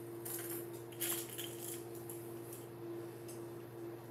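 Hard-bodied fishing lures clinking and clicking against each other and the plastic as one is picked out of an open tackle tray, in a few short bursts within the first second and a half, then fainter clicks, over a steady low hum.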